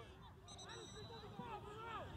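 Faint distant voices of people talking across the field, with a brief faint high steady tone about half a second in.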